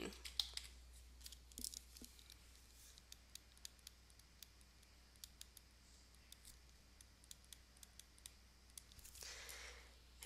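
Faint, irregular small clicks and taps from handwriting being entered on a computer with an on-screen pen tool, over near-silent room tone with a steady low hum.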